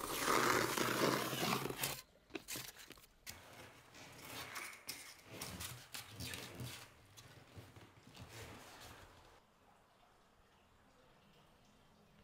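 A Stanley knife slicing through recycled-plastic underlay board for about two seconds, a rasping tear. Then light taps, scrapes and rustles as the cut underlay pieces are set down and pushed into place on the floor.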